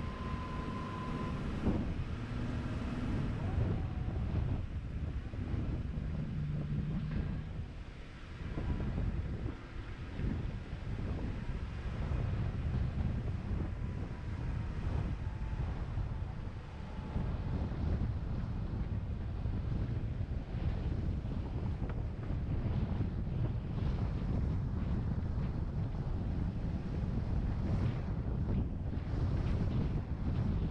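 Wind buffeting the microphone of a camera carried along on a moving bike, a steady fluttering rumble with a brief lull about eight seconds in.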